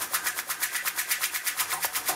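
Electronic dance track played through a Pioneer DJ mixer with the channel filter cutting away the bass and an echo/delay effect running on top, leaving a fast, even ticking of repeated hi-hats.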